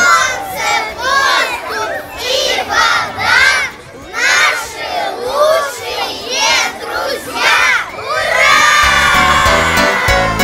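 A group of young children shouting together: a string of short calls, then one long cheer in the last couple of seconds.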